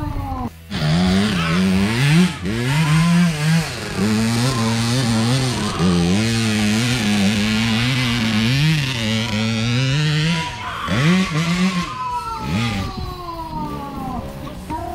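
Trail motorcycle engine revving hard and unevenly, its pitch rising and falling with the throttle as it climbs a steep dirt hill, then falling away near the end.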